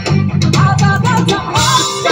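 Live band playing: electric guitar over a strong bass line, with a voice singing the melody.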